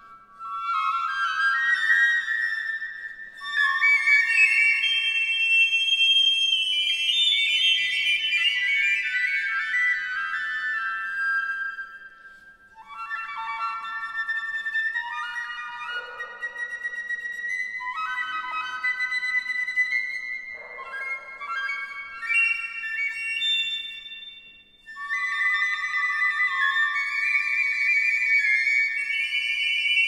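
Two piccolos playing a lively, ornamented duet over piano accompaniment, in phrases broken by brief pauses, with a long descending run about a third of the way in.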